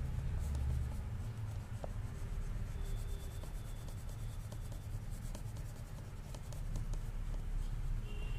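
Colouring strokes scratching on a paper worksheet backed by a clipboard, as the square legs of a drawn robot are coloured in: faint, quick, irregular rubbing strokes.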